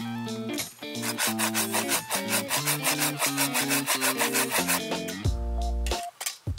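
A Samurai pruning saw cutting through a dead branch in quick, even strokes, about five a second, starting about a second in and stopping near the end, over background music.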